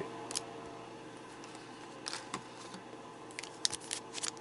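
Trading cards and a foil booster pack handled on a playmat: a few faint, short clicks and rustles, with a quick cluster of them near the end.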